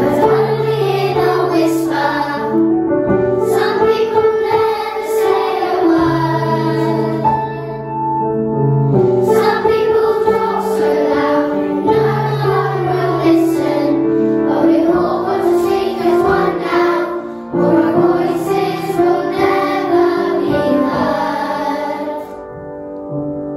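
A children's choir singing together over an instrumental accompaniment of long, held low notes, with brief breaks between phrases.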